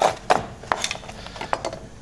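Chef's knife chopping hard palm sugar on a plastic cutting board: several sharp knocks at irregular intervals as the blade breaks the sugar down.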